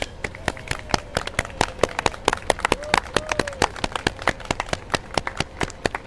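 Scattered clapping from a small group of people, quick irregular claps that stop suddenly near the end.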